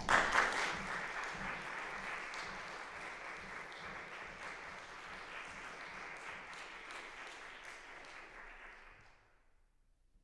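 Audience applauding, loudest at the start and fading away over about nine seconds.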